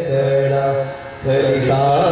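A man singing a Gujarati devotional verse in long, slowly gliding held notes over musical accompaniment. The singing drops away briefly about a second in, then resumes.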